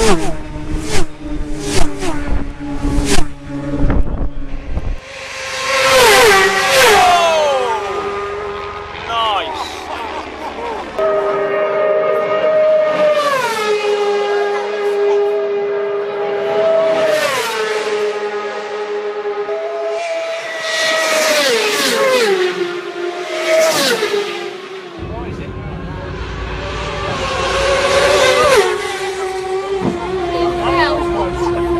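Race motorcycles passing at very high speed one after another, each high-revving engine note falling in pitch as the bike goes by. The first pass is very close, with sharp blasts of noise in the first few seconds.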